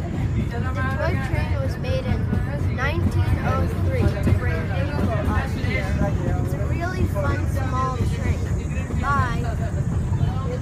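Steady low rumble of a Kalka–Shimla narrow-gauge toy-train carriage running along the track, heard from inside the carriage, with voices talking over it.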